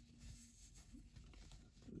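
Near silence: faint handling noise as fingers rub an action figure's soft costume and cloth cape.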